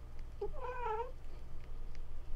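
A single cat meow, wavering in pitch, about half a second in.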